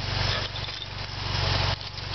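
Sears Suburban SS/16 garden tractor engine idling steadily after a cold start, with keys rattling on a ring for the first second and a half.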